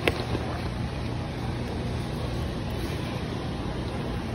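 Steady background hum and hiss of a large warehouse store's interior, with one short click at the start.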